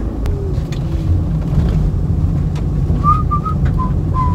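Steady low rumble of engine and road noise inside a moving car's cabin. Near the end a few short, high whistled notes sound over it.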